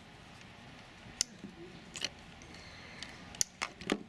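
A handheld clamp meter being moved from one cable to another: about four short, sharp plastic clicks as its jaws are opened and snapped shut, with faint handling in between.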